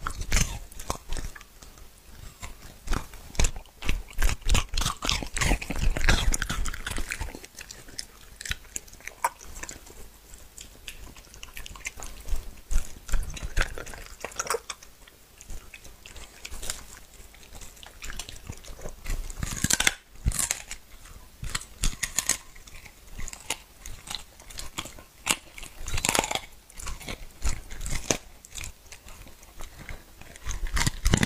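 A dog chewing and biting raw meat fed from the hand, close up: a quick, continuous run of wet chomps, snaps and crunches.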